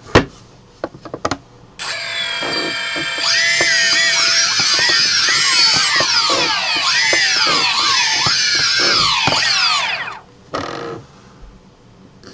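Brushless motors of a cheap SimpleBGC-controlled camera gimbal whining as they drive the camera: a steady high whine with many tones sweeping up and down over and over. It starts about two seconds in and cuts off near ten seconds.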